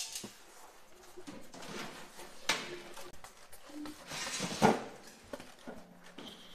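Stainless steel oven tray handled and slid into a countertop electric oven: a few sharp metal knocks, the loudest about four and a half seconds in, just after a short scrape.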